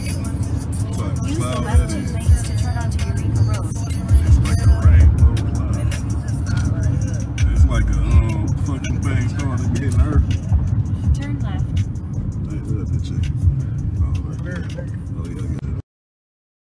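Car cabin noise: a steady low road and engine rumble from a moving car, with an indistinct voice over it and scattered small clicks. The sound cuts off suddenly near the end.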